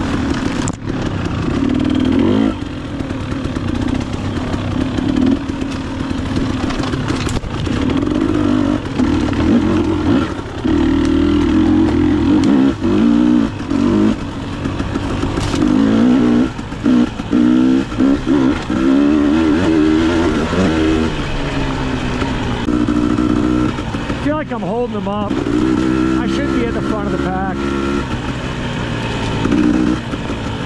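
Dual-sport motorcycle engine riding along, its pitch rising and falling as the throttle opens and closes and the gears change.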